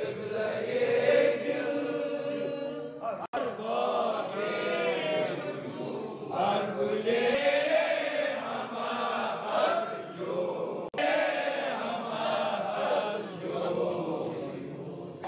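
A group of men chanting devotional verses together from their booklets. Several voices blend into a continuous, swaying chant, which breaks off for an instant twice.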